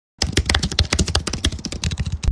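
A dense, rapid run of sharp clicks like typing on a computer keyboard, starting a fraction of a second in and running on.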